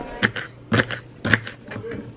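Kitchen knife chopping celery on a wooden cutting board: a run of sharp knocks, about two cuts a second.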